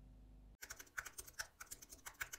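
Faint computer-keyboard typing clicks, about six a second, starting about half a second in. They are a typing sound effect keeping time with on-screen text appearing letter by letter.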